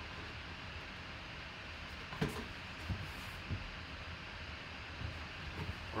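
Cardboard box and clear plastic display case being handled as the case is lifted out: a few soft knocks and taps, the sharpest about two seconds in, over steady room hiss.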